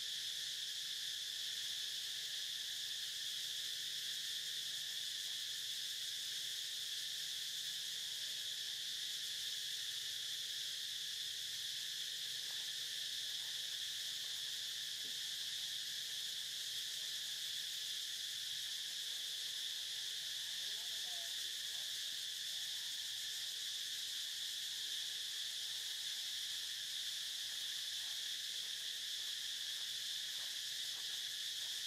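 A steady, high-pitched insect chorus that holds one level without a break.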